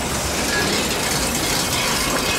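Cartoon crash sound effect: a camper van wrecking and breaking apart, a loud, dense clatter and rattle of metal parts.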